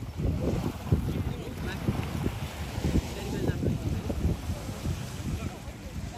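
Wind buffeting the microphone in irregular gusts over the wash of surf.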